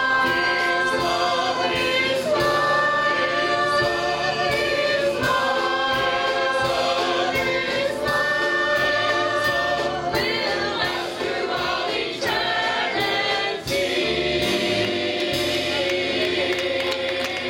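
Mixed church choir of men and women singing a gospel song, holding long notes in chords that change every second or two.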